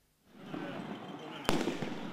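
A single sharp bang of a firecracker-type explosive (Böller) going off about one and a half seconds in, over a din of riot noise with shouting voices that starts just after the opening.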